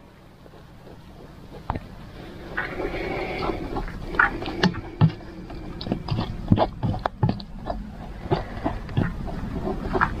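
Plastic spatula scraping and pressing cooked tomato pulp through a plastic sieve set on an enamel pot. It starts about two seconds in as a run of irregular scrapes and sharp knocks, several a second.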